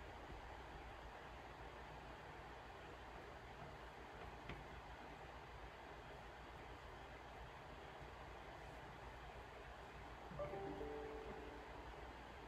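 Near silence: faint steady room tone, with a soft click about four and a half seconds in and a short, steady low hum with overtones near the end.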